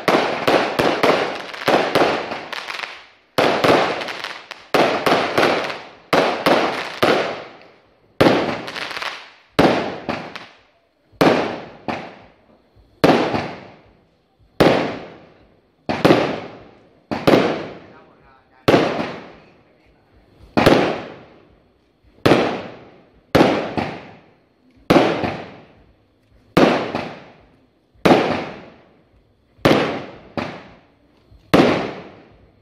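Aerial fireworks bursting: a fast barrage of bangs at first, then a steady run of single bursts a little more than one a second. Each bang trails off over most of a second.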